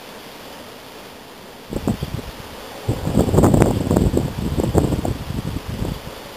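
Gusts of wind buffeting the microphone with an irregular low rumble, starting about two seconds in and growing louder, over a rustle of leaves in the hillside brush.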